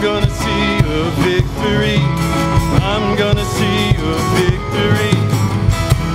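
Live worship band playing a song: a male lead vocal sung over strummed acoustic guitar, with a drum kit keeping a steady beat and electric bass underneath.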